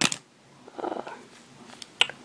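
Quiet room with a single sharp click at the start, then a brief murmured 'uh' about a second in.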